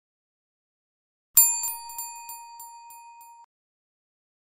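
A bell-ring sound effect for a notification-bell animation: one bright ding about a second and a half in, followed by a few quicker, fainter re-strikes. The ring dies away over about two seconds, then cuts off suddenly.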